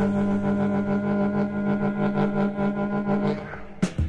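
Early-1960s Chicago blues band, electric guitar with saxophones, holding its closing chord, which pulses rapidly about five times a second. One sharp final hit comes near the end as the song rings out.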